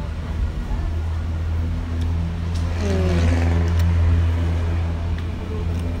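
A low engine drone that swells to its loudest about halfway through and then fades, with a pitch falling near the middle.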